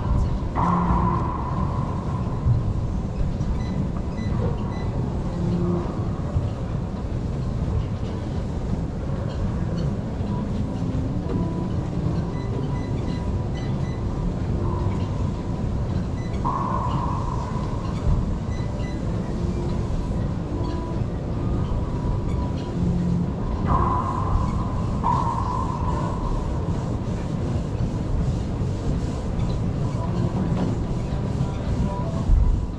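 Racquetball play in an enclosed court: a steady low rumble runs throughout. Several short high squeaks come about a second in, near the middle and twice near the end, with a few faint knocks between them.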